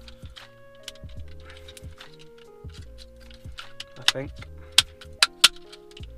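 Background music, with three sharp clicks in the last second and a half as the plastic-and-metal phone mount is handled and pushed into a car dashboard air vent.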